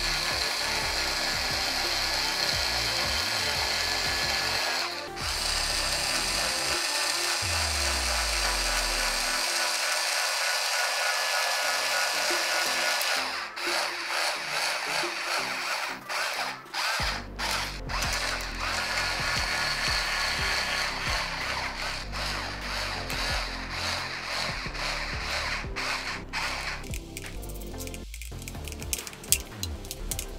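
Small cordless electric screwdriver running in long stretches with brief stops, driving screws through a plastic container lid into the corner holes of a cabinet fan's frame.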